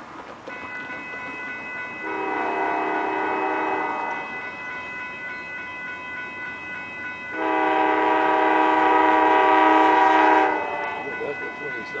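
Horn of the California Zephyr's Amtrak locomotive sounding two blasts of a multi-note chord, a shorter one about two seconds in and a longer, louder one of about three seconds from about seven seconds in.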